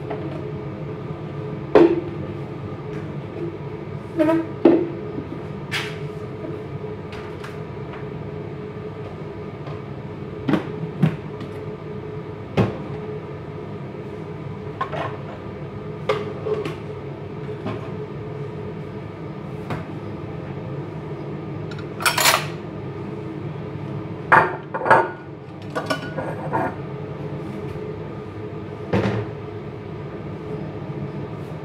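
Pots, pans and utensils knocking and clinking now and then during cooking, over a steady low hum. The loudest clatters come about two-thirds of the way through.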